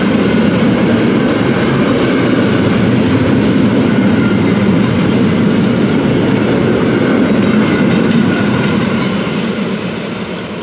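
Four-axle Uacs cement hopper wagons of a freight train rolling past, a loud steady rumble of steel wheels on rail that starts to fade near the end as the last wagons move away.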